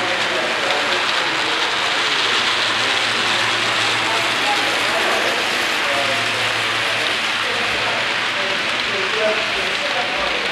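A steady hiss with indistinct voices murmuring faintly underneath.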